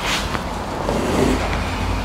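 Steady low background rumble of room noise, with a faint click about a third of a second in.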